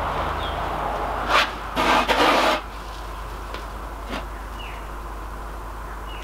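A wooden moulding flask packed with rammed green sand scraping and sliding on a plywood board as it is shifted and lifted. There is a sharp knock about a second and a half in and a louder half-second scrape just after, then a few light taps.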